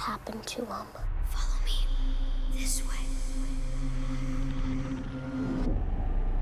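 A brief hushed voice in the first second, then a low sustained horror-score drone with a few sharp high hits, which cuts off shortly before the end.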